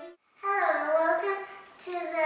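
A young girl's voice, starting about half a second in after a brief silence.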